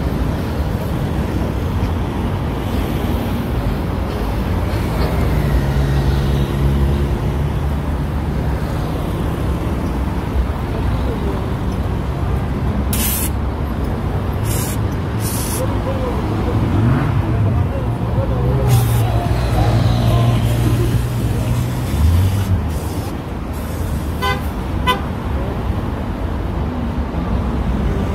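Roadside traffic noise, with vehicles passing and a vehicle horn sounding. Voices and a few short sharp noises come partway through.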